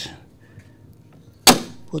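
A single sharp clack about a second and a half in, with a short ringing tail: a horseshoe magnet set down onto the iron pole pieces of a small hand-cranked generator.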